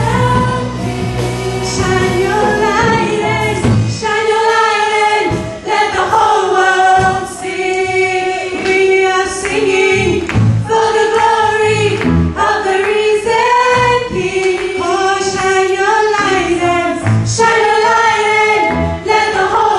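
Live gospel praise-and-worship music: a woman's sung lead vocal with other voices, over electric guitar and a drum kit.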